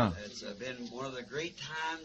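A faint man's voice, quieter than the main speaker, in a short gap between his phrases. It rises toward the end.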